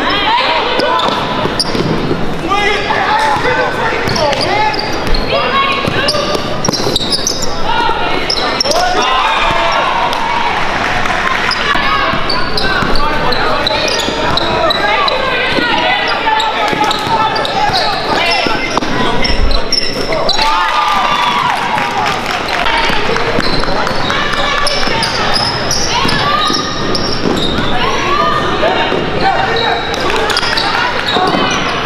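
Live basketball game in a gym: the ball bouncing on the hardwood court under a steady din of spectators' voices and shouts, echoing in the large hall.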